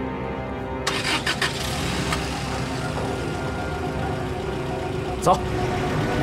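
A military jeep's engine starting with a few clicks about a second in, then running steadily under dramatic background music.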